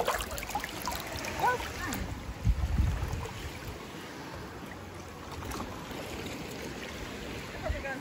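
Shallow seawater lapping and sloshing close to the microphone around people wading, with a brief low rumble about two and a half seconds in.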